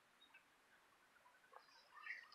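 Near silence, with a couple of faint ticks.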